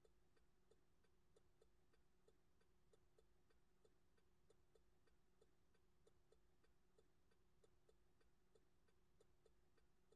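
Near silence: a very faint, regular ticking, about four ticks a second, over a faint steady hum.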